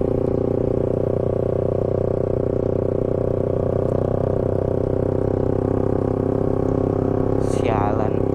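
Motorcycle engine running steadily at a constant cruising speed, heard from the rider's seat, its drone holding one pitch throughout.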